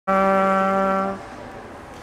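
A brass instrument holding one long, steady low note for about a second, then stopping.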